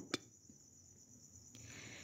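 Almost silent: a faint, steady high-pitched hiss of background noise, with a short click just after the start and a soft breath of noise near the end, just before the voice-over resumes.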